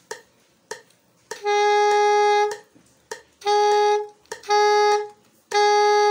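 Soprano saxophone sounding the same note four times: one long note about a second in, then three shorter ones, all at the same pitch, with faint key clicks in the gaps. The note is played with different alternative fingerings, and all come out the same.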